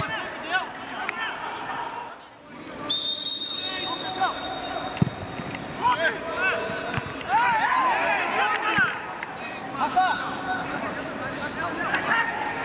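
Footballers shouting and calling to one another on the pitch, with no crowd noise behind them. A referee's whistle is blown once, about three seconds in. A couple of dull thuds follow later.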